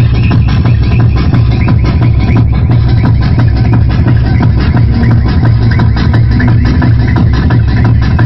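Loud tekno dance music mixed from vinyl on turntables and played through a sound system, with a heavy bass and a fast, driving beat.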